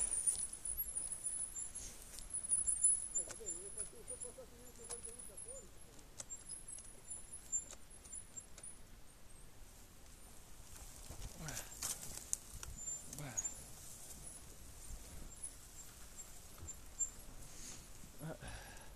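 Trials motorcycles moving slowly over rough forest ground: scattered knocks and rattles, with a faint wavering engine note a few seconds in and two falling sweeps later on.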